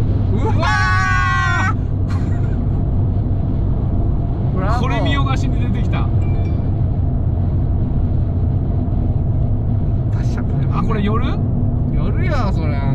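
Steady low road and engine drone inside the cabin of a Fiat 500 1.2 with a manual gearbox cruising at expressway speed, with short vocal exclamations about a second in, around five seconds in, and near the end.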